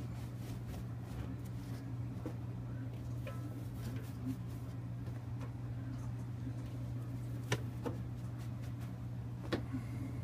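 Damp towels being pulled out of a 1966 Philco Flex-A-Wash top-loading washer tub, with faint rustling and a couple of sharp knocks near the end, over a steady low hum.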